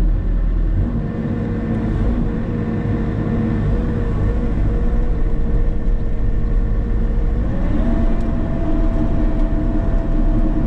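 Bobcat E50 mini excavator's diesel engine and hydraulics running under load while the bucket digs in rocky ground, heard from inside the cab. A steady whine rises a step in pitch about seven and a half seconds in as the machine works harder.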